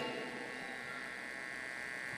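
Low, steady electrical hum and buzz from the microphone and sound system, over room tone.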